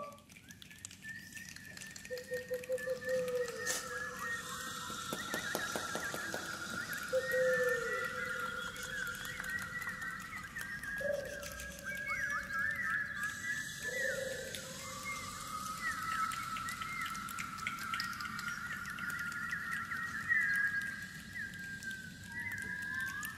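Birds calling: a busy layer of high chirps and trills, with a few longer whistled notes that dip in pitch as they end.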